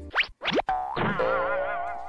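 Cartoonish sound effects: two quick rising slides in pitch, then a wobbling "boing"-like tone whose pitch warbles up and down and slowly fades.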